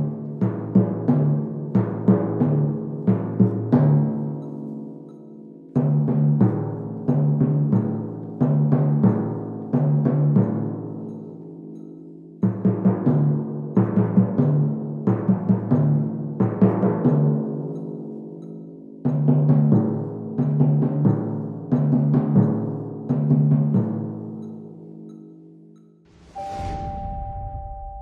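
Pair of pedal timpani tuned to A and D, struck with felt mallets in groups of alternating-hand strokes (two eighth notes and a quarter, later eighth-note triplets and a quarter), each note left to ring. Near the end the ringing fades, followed by a short whoosh and a two-note chime.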